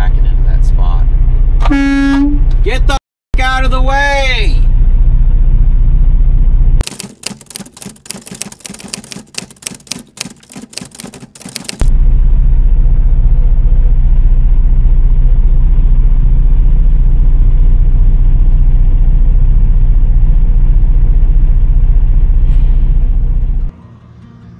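Steady low rumble of an idling truck engine heard from inside the cab. A short horn toot comes about two seconds in, followed by a wavering shout. The rumble drops away for about five seconds in the middle, leaving a light crackle of clicks.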